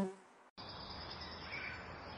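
A flying insect's wing buzz, a steady drone that fades out in the first moment. After a short break comes a steady outdoor hiss, with a faint bird chirp about one and a half seconds in.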